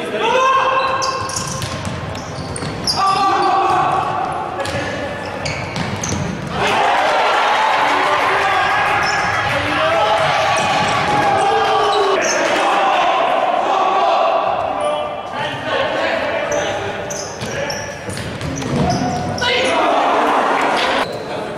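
Live futsal play in a large indoor hall: players and spectators shouting, with the thuds of the ball being kicked and struck on the wooden court. The shouting swells into a dense, loud stretch through the middle.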